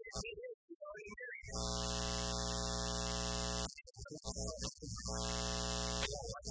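A loud, steady electrical buzz from the sound system, heard twice: about two seconds long starting a second and a half in, then again near the end. Each time it starts and cuts off abruptly. It is an unwanted fault in the audio feed, and an apology follows.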